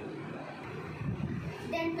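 A child starts speaking near the end, over steady background room noise.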